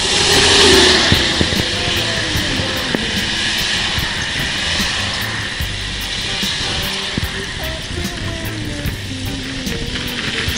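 Steady wind noise on the microphone of a camera carried on a road bicycle riding along a highway, with road rumble beneath; it swells briefly about a second in.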